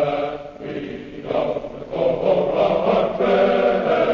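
A choir singing in sustained chords, phrase by phrase, from an old 1948 radio transcription. It grows louder about halfway through.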